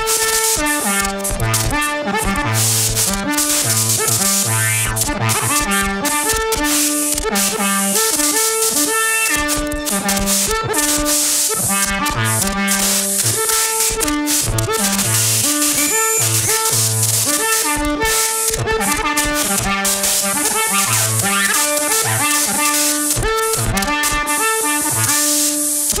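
Modular synthesizer music at a steady loudness: a running sequence of short pitched notes over a stepping bass line, with dense clicks and hiss on top.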